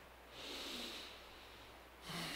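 A single soft breath, about a second long, picked up close on a headset microphone.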